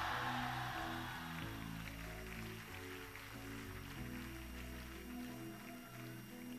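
Quiet music of slow, held low notes, with a congregation's noise fading away over the first two seconds.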